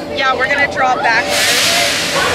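Expedition Everest roller coaster train running along its track, with a loud rush of wind and track noise sweeping in about a second and a half in.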